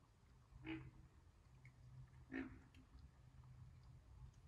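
Baby alligators croaking: two short, faint calls about a second and a half apart, the second slightly the louder.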